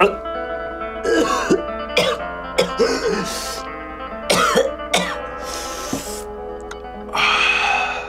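A man coughing and clearing his throat several times, the longest and roughest burst near the end, over soft background music with held tones.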